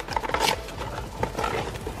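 Cardboard toy box being handled and turned over: irregular rustling, tapping and scraping of the packaging under the hands.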